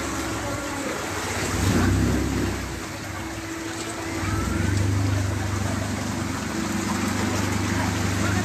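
A vehicle's engine running as it moves slowly through deep floodwater, with water washing and sloshing around it. The sound swells twice, about two seconds in and again around five seconds.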